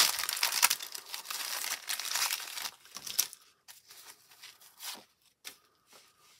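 Plastic wrapper of a 1990 Topps cello pack of baseball cards crinkling and tearing as it is pulled open by hand, loud for about the first three seconds. After that come a few soft clicks and rustles of the cards being handled.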